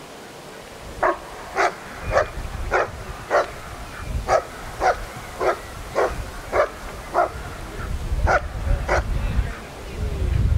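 German Shepherd barking repeatedly at a protection helper: about thirteen sharp barks, roughly two a second with a couple of short pauses, starting about a second in. A low rumble rises near the end.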